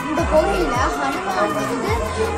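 A girl talking, with background music under her voice: repeated deep bass notes that slide down in pitch.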